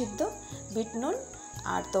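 A person's voice, with a steady high-pitched trill of crickets underneath.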